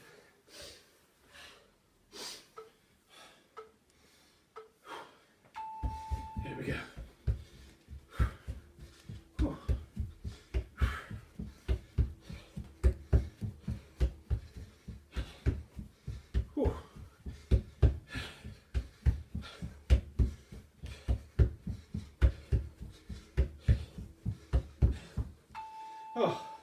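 Socked feet stepping up and down on a plastic aerobic step platform, a quick steady rhythm of thuds of about two to three steps a second. It is framed by two short single-pitch electronic interval-timer beeps twenty seconds apart, one about six seconds in that starts the work interval and one near the end that stops it.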